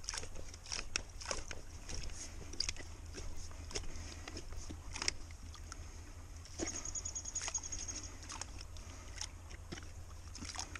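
Wet creek-bank mud being dug out at the waterline with a wooden-handled digging tool: irregular scrapes, squelches and knocks, with some water sloshing, as a pocket hole is cut into the bank. A brief rapid high-pitched trill runs for about a second and a half in the second half.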